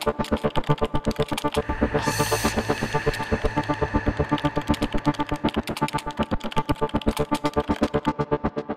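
Electronic synthesizer jingle for a news outro: fast repeating notes, about eight a second, with a short whoosh about two seconds in.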